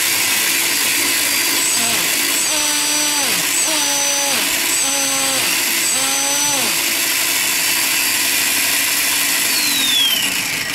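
Flywing FW450 RC helicopter's electric motor and drive spinning at a steady speed, giving a loud, even whir. Its pitched whine steps up and drops back four times in the middle. The motor spun up at once because the ESC has no soft start.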